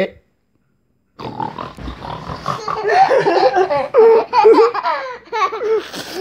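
People laughing loudly and excitedly, starting about a second in after a brief silence and running in quick, uneven bursts of voice until near the end.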